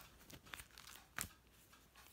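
Faint rustling of paper sticker sheets handled by hand, with a brief louder rustle about one second in.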